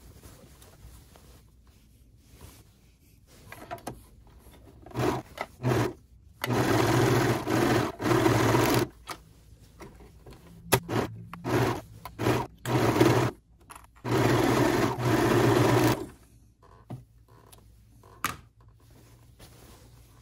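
Serger (overlocker) stitching a fabric seam in stops and starts: a few short bursts about five seconds in, two longer runs of a couple of seconds each, more short bursts, then another long run that stops about sixteen seconds in.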